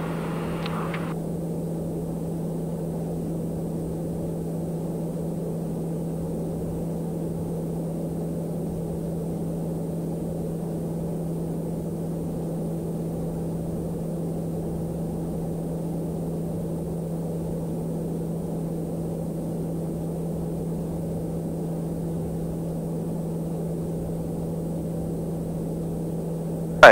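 Cabin noise of a TBM 910 climbing: its turboprop engine and propeller make a steady drone with a constant low hum, heard from inside the cockpit.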